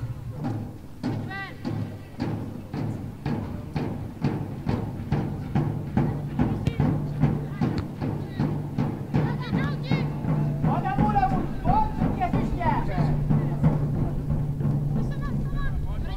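Steady rhythmic percussive beating, about three beats a second, over a low steady hum, with voices calling out now and then.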